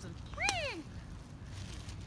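A single gull call about half a second in: one short cry that rises sharply and then falls away.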